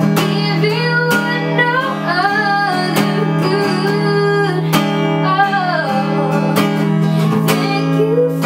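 Acoustic guitar strummed in a steady rhythm, accompanying a boy singing long, held notes that waver slightly.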